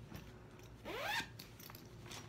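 A bag's zipper pulled once, quickly, about a second in, rising in pitch over about half a second.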